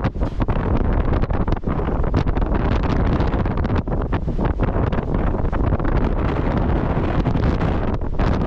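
Wind buffeting the microphone on the open deck of a cruise ship: a continuous low rushing roar with irregular gusty thumps.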